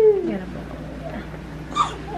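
Newborn baby crying, the cry falling away in the first half second, then a few faint short whimpers.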